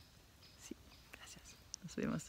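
Very quiet background with a few faint short ticks, and a brief soft breathy voice sound near the end.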